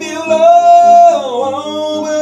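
A singer holding one long sung note that slides down about a second and a half in, over acoustic guitar.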